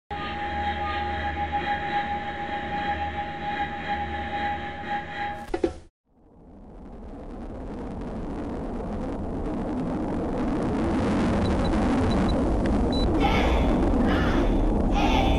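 A steady electronic drone with several held tones cuts off with a click about five and a half seconds in. After a moment of silence a deep, rumbling jet roar, the sound of F-22 Raptor fighter jets, swells in and keeps building.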